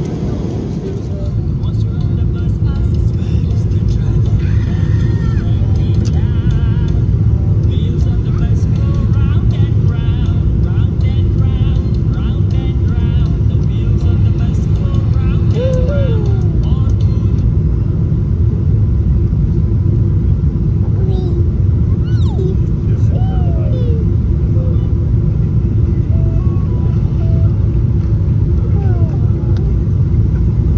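Steady low rumble of a passenger jet's cabin in flight, with faint voices over it.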